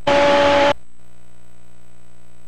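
A short snatch of a TV channel's sound, noisy with two steady tones through it, cut off abruptly after under a second as the set-top box changes channel; a steady hum runs beneath it.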